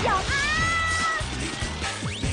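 A high female voice sings one long held note over the song's backing music. The note slides up at the start and holds until about a second in, then fades away.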